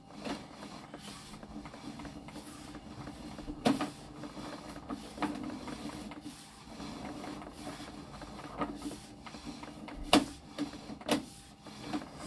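Sewer inspection camera's push cable being fed along the line from its reel: a steady mechanical whirring with scattered sharp clicks and knocks, the loudest about ten seconds in.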